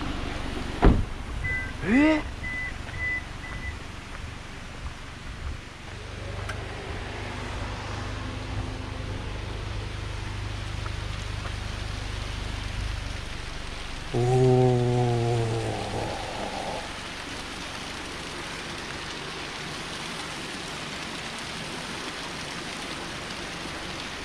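Small mountain stream running down a rocky cascade, a steady rush of water; the stream is low, with little water in it. About two-thirds of the way through comes a brief low vocal sound, louder than the water.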